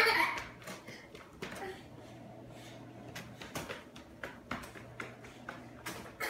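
A toddler's loud squeal of laughter fades away at the start. After it come scattered light footsteps and knocks on a hardwood floor.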